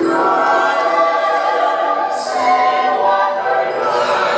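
Show soundtrack music played over outdoor loudspeakers: a choir singing sustained, overlapping notes.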